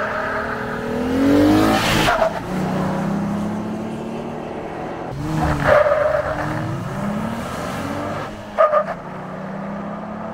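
Jeep Gladiator's 3.6-litre V6, with a manual gearbox, pulling at full throttle on a 0-60 mph run. The engine note climbs, breaks off at gear shifts about two, five and a half and eight and a half seconds in, then climbs again.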